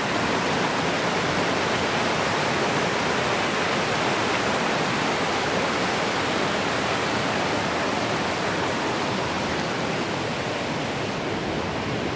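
Steady rush of a large waterfall, water falling an estimated 35–40 metres into a pool below. It dips slightly near the end.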